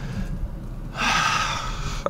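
A person's long breathy sigh about halfway in, over the low steady hum of the car inside its cabin.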